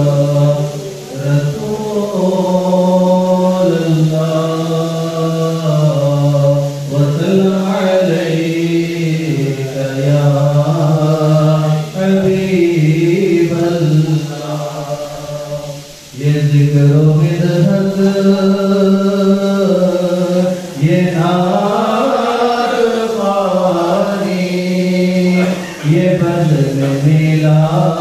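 A man singing a naat, Urdu devotional poetry, unaccompanied, in long drawn-out melodic phrases with held, wavering notes and short breaths between lines.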